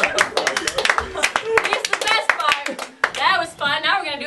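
Small audience clapping, irregular and thinning out after about three seconds, as voices start talking near the end.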